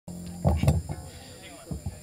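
A man's voice through a live PA comes in short loud bursts about half a second in, with a few fainter knocks later, over a steady hum from the sound system.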